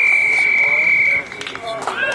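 Referee's whistle: one long blast on a single steady pitch that sags slightly before stopping a little over a second in, followed by players' voices.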